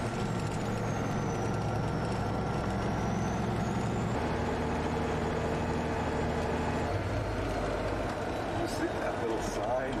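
Truck engine running, heard from inside the cab while driving, a steady low drone whose note steps to a new pitch about four seconds in and again near seven seconds.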